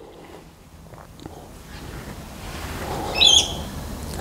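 A bird gives a short, wavering high chirp about three seconds in, over a faint background hiss that slowly grows louder.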